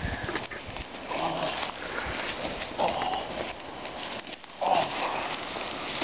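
A person crawling through dry leaf litter on a forest floor, the leaves rustling and crackling, with three short grunt-like voice sounds about two seconds apart.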